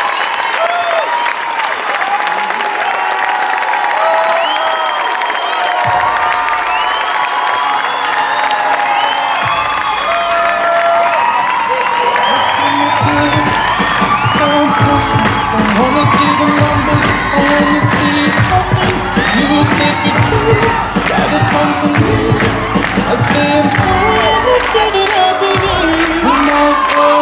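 Audience cheering, screaming and whooping, many high voices at once. About six seconds in, music comes in under the cheering, and from about thirteen seconds it carries a steady bass beat while the crowd keeps cheering.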